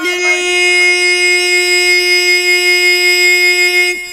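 Young male voice singing a Pashto naat without instruments, holding one long steady note on an open vowel that stops just before the end.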